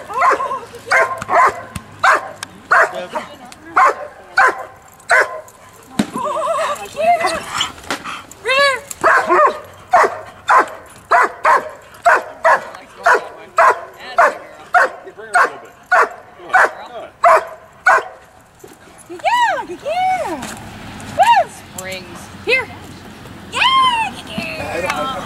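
Dog barking at the helper in an IPO bark-and-hold, a steady run of about two barks a second. Near the end the barking breaks into high whining yelps.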